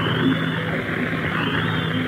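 Live rock concert audience noise between songs, a steady crowd din over a low steady hum, with two faint high wavering whistles.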